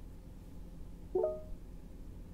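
A short electronic chime of a few stacked tones from the 2023 Ford Escape's SYNC 4 voice-command system, about a second in, lasting about a third of a second. It sounds over a faint steady low hum.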